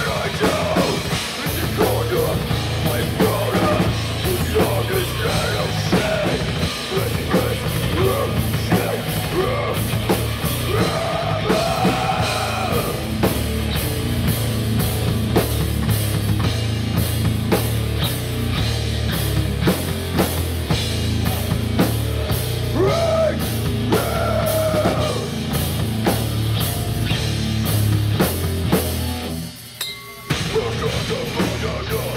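Heavy metal band playing live: fast drum kit, guitars and bass, with a singer's voice coming in at times. The band cuts out briefly near the end.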